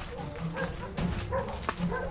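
A few short animal yelps over a low outdoor rumble, with two sharp knocks about a second apart.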